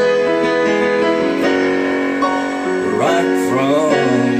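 Digital piano playing a country song, with held chords under a melody that changes every second or so. A sliding, bending melodic line comes in about three seconds in.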